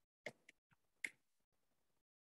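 Faint computer keyboard keystrokes: a few short, sparse clicks as a word is typed, the loudest about a second in.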